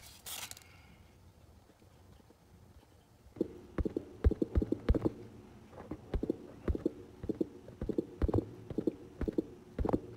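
Meta Quest 3 Elite Strap with Battery being handled: after about three seconds, a run of irregular hard-plastic clicks and knocks, two or three a second, each with a short ringing tone.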